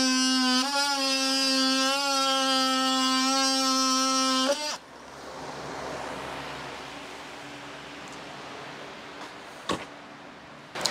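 Oscillating multi-tool cutting through thin plywood paneling: a steady buzzing whine with slight wobbles in pitch as it bites, stopping abruptly about five seconds in. A faint steady hiss follows.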